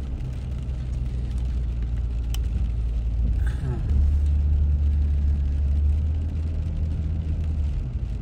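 Low, steady rumble of a car driving, heard from inside the cabin, growing heavier from about four seconds in. There is a single sharp click about two seconds in.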